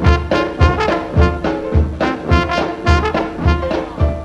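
Dixieland jazz band playing an instrumental passage, with trumpet and trombone over a steady bass beat about twice a second. It comes from an old vinyl LP.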